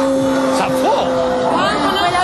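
A woman's long scream at one steady pitch, held for nearly two seconds and cutting off near the end, with the presenters' short exclamations over it.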